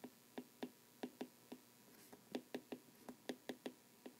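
Stylus tapping and clicking against a tablet screen while handwriting: faint, irregular clicks, a few a second.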